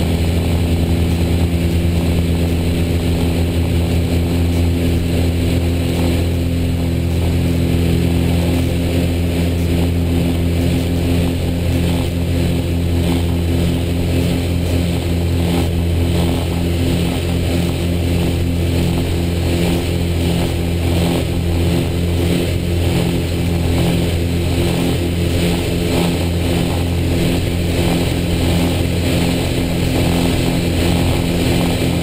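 Steady drone of a Piper PA-34 Seneca II's piston engines and propellers heard inside the cockpit in flight, a deep hum with a constant low pitch.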